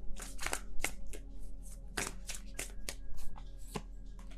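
A tarot deck being shuffled by hand: a run of irregular, sharp card snaps and flicks over faint steady background tones.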